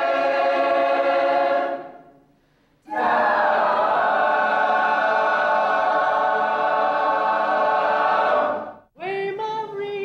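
Choir of teenage girls singing long sustained chords: the first fades out about two seconds in, and after a short silence a second chord is held for several seconds and ends abruptly. Just before the end a smaller group of women's voices starts singing, with wavering pitch.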